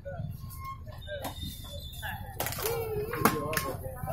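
People's voices talking, mostly in the second half, with one sharp click a little past three seconds in.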